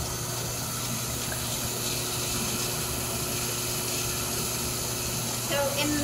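Steady watery rushing with a faint hum from a running lab-scale distillation column, its ethanol–water mixture bubbling inside.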